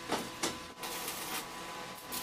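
Two quick knocks close together near the start as steel angle-iron shelf frames are handled and set in place, then only low background noise.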